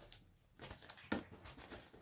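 Quiet handling noise: faint rustling of a neoprene ball holder and its straps as a small football is turned over by hand, with one soft tap a little over a second in.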